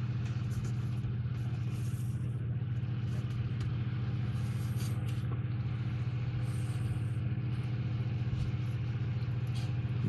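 A steady low hum, unchanging throughout.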